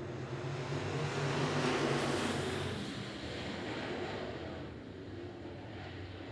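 A pack of dirt late model race cars running hard on a dirt oval, their V8 engines growing louder as they pass about two seconds in, then fading away.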